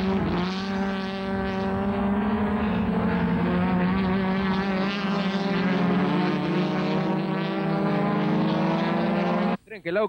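Racing touring-car engines running at steady high revs on track, a loud continuous drone with a slightly wavering pitch that cuts off abruptly near the end.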